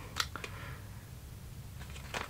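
Two small clicks just after the start as a small skincare sample package is handled, then a steady low room hum.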